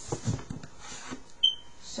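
Faint rustling and light knocks of things being moved on a tabletop, then a single short high chirp about one and a half seconds in.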